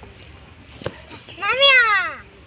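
A single high, meow-like animal call that rises and then falls in pitch, about one and a half seconds in.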